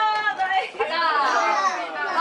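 Several high-pitched voices of children and young women talking over one another.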